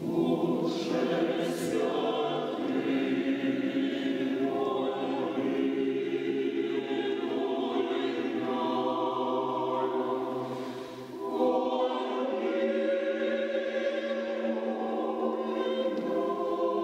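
Mixed choir singing unaccompanied, in sustained chords. After a brief dip about eleven seconds in, a new phrase begins without the lowest bass voices.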